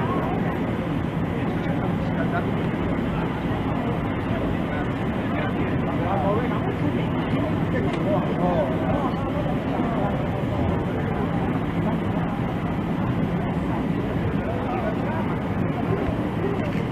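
Chatter of people talking over the steady hum of an idling vehicle engine.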